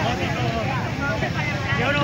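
Crowd of onlookers talking over one another, many voices at once with no single speaker standing out, over a steady low rumble.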